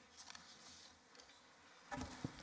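Near silence: faint room tone with a few soft rustles.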